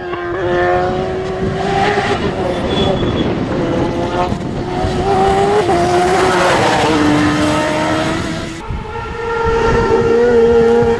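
Prototype race car engine at high revs, climbing hard with its pitch holding steady and then dropping back at each upshift, several times over. At about nine seconds a different, higher-pitched race engine takes over.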